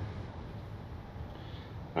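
Steady low background hiss and rumble with no distinct event.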